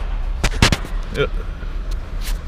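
Sharp metallic bangs from scrapyard machinery handling scrap metal, loudest about half a second in and again near the end, over the low rumble of an idling vehicle.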